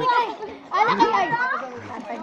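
Voices calling out and chattering, with no clear words, and a louder burst of high-pitched shouting about a second in.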